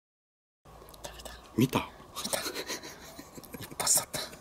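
Dead silence at first, then scratchy rubbing and brushing sounds with sharp clicks close to the microphone: handling noise. A short voice-like sound comes about a second and a half in.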